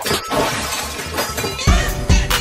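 Glass-shattering sound effect: a sudden crash that scatters away over about a second and a half, replacing the music's beat, with a pop beat coming back in near the end.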